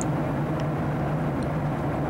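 Steady cabin noise of a Boeing 737-700 airliner in cruise: an even rush of airflow and engine sound from its CFM56 engines, with a steady low hum underneath.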